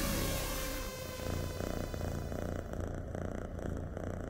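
A cat purring, a low, even, pulsing rumble. It comes in under a falling electronic tone that dies away in the first second or so.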